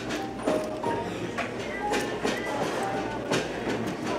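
Busy restaurant dining room: a murmur of background voices with scattered clinks and clatter of dishes and cutlery, some of them ringing briefly.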